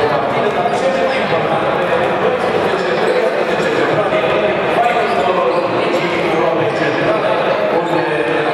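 Many voices of a crowd chattering in a large hall, with a basketball bouncing on the hardwood court.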